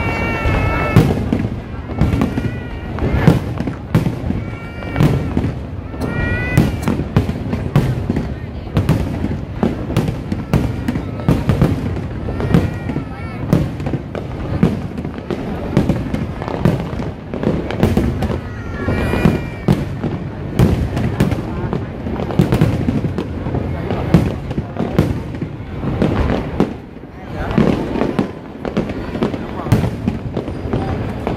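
Aerial fireworks display: a rapid, continuous string of shell bursts and bangs, with a crowd's voices heard under them.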